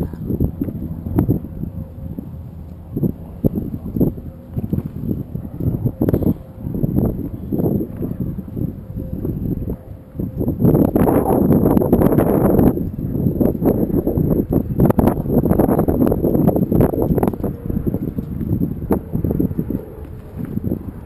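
Wind buffeting a small action camera's microphone on a motorboat, with choppy water slapping against the hull in uneven knocks. There is a louder rush of about two seconds near the middle.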